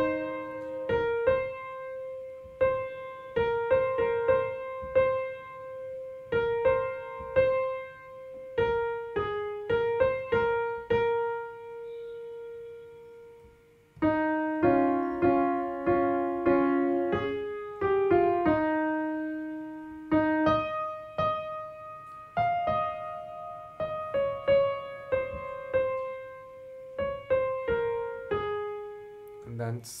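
Piano playing a slow right-hand melody of single notes, each struck and left to fade. Just before the middle the notes thin out and fade, then a few notes sound together as chords for a few seconds before the single-note melody resumes.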